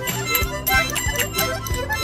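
A group of children sounding small wind and percussion instruments all at once, a jumble of overlapping reedy held tones at different pitches with scattered clicks and rattles.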